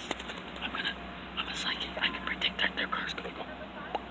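Quiet whispered speech, too low for the words to be made out.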